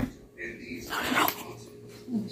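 A small dog making two short vocal sounds, the second louder.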